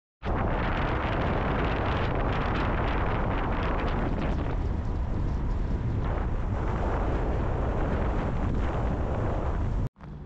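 Loud, steady wind buffeting on the microphone, a constant rumbling rush that cuts off abruptly near the end.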